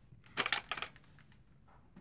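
A brief crackling, rustling noise about half a second in, lasting about half a second, then only quiet room sound.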